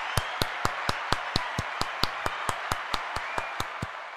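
Applause with a steady rhythmic clap about four times a second over a wash of crowd noise, fading near the end.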